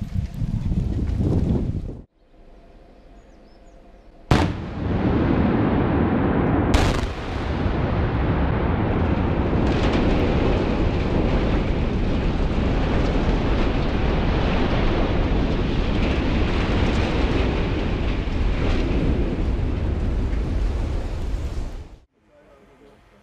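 Explosive demolition of a tall steel gasholder tower: two sharp blasts of the charges about two and a half seconds apart, then a long, loud rumble as the structure collapses. A separate loud rumble is heard at the start and cuts off about two seconds in.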